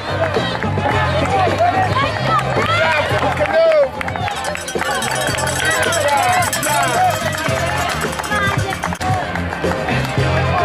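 Spectators shouting and cheering on passing runners, many voices overlapping, over music with a stepping bass line.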